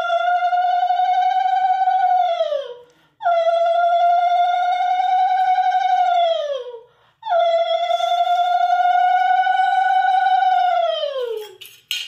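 A conch shell (shankha) blown three times, each blast a long, steady note of about three seconds that sags in pitch as the breath runs out, as is customary at a Hindu home ritual.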